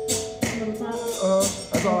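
Band practice music: a held keyboard chord fades out, light percussion keeps a steady beat of about three strikes a second, and a singer's voice comes in during the second half.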